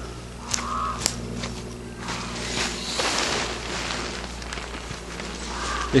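Nylon fabric of a bivvy bag with a sleeping bag inside rustling and crinkling as it is handled close to the microphone, a few short clicks near the start, and the rustling louder and denser over the second half.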